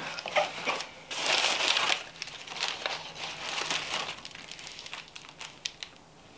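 Crumpled newspaper packing crackling and rustling as hands dig it out of a cardboard box, loudest about a second in, then thinning to scattered crinkles.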